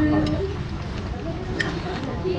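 Indistinct background voices over a low steady rumble, with one sharp clink of metal cutlery on a plate about one and a half seconds in.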